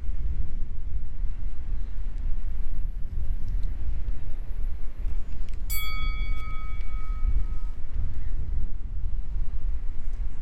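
A single bright bell chime about six seconds in, ringing on for about two seconds: the subscribe-reminder notification-bell sound effect. It sits over a continuous low rumble.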